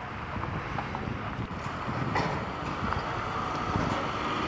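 Wind buffeting the microphone outdoors: a steady, low rumbling noise with a few faint ticks and no clear single source.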